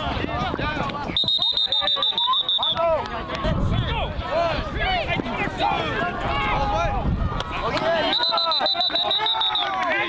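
Two long, steady, high-pitched whistle blasts, each under two seconds and about six seconds apart, over overlapping shouting voices.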